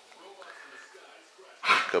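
A dog barks once, loudly and suddenly, near the end.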